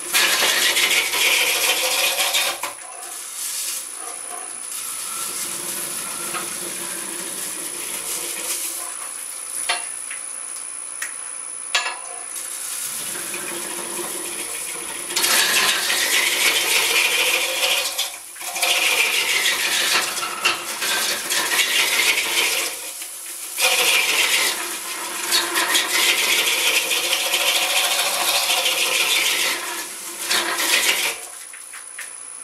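A hollowing tool scrapes inside a log spinning on a wood lathe at about 425 rpm, refining the inner walls of a hollowed-log birdhouse. The cutting comes loudly for the first couple of seconds, then softer for a long middle spell with a couple of sharp clicks, and loudly again in three long passes over the second half.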